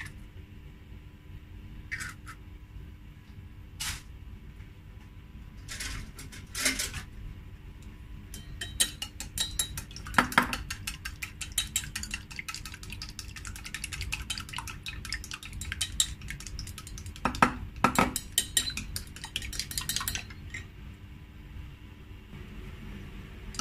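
Chopsticks beating a raw egg in a small stainless steel bowl, a fast run of metallic clinking against the bowl that lasts about twelve seconds and stops shortly before the end. A few separate knocks come in the first seconds as the egg goes into the bowl.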